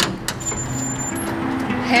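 Two sharp knocks of a metal ring door knocker against a door, one right at the start and one a moment later, followed by a low steady hum.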